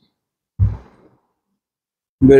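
A single short, breathy sigh or exhale, sudden and fairly loud, a little over half a second in, fading away within about half a second.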